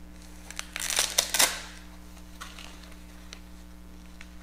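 Plastic packaging rustling with a few sharp clicks for about a second, near the start, as bagged cables and unboxed items are handled, then a couple of faint ticks. A steady low hum runs beneath.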